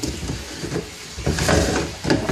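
Large black screw-on plastic lid of a polyethylene tank being twisted off, with irregular scraping and knocking of plastic on plastic.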